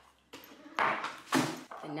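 Glass perfume bottles being pulled out of their cardboard boxes: a rustle of packaging, then a sharp knock about one and a half seconds in as a bottle meets the counter or another bottle.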